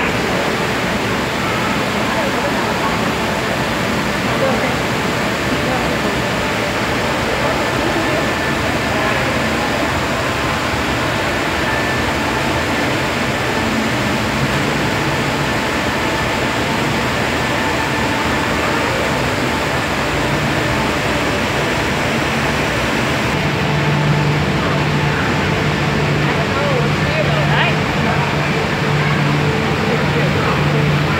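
Steady background hubbub in an aquarium hall: indistinct voices of visitors over a constant rushing noise. A low steady hum comes in about three-quarters of the way through.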